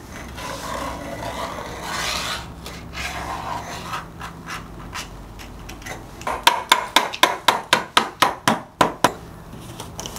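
Hand tools working at a wooden baseboard: a few seconds of scraping and rubbing, then a quick run of about a dozen sharp, ringing taps, about four a second.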